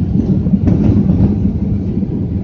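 Cabin noise of a Ryanair Boeing 737 on its landing rollout with the spoilers raised: a loud, steady rumble of the wheels on the runway and the engines, heard from inside the cabin.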